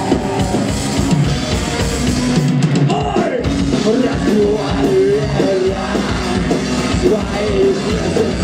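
Live rock band playing drum kit, guitars and vocals, heard from within the audience in a club. The drums and low end drop out for a moment about two and a half seconds in, then the band comes back in under the singing.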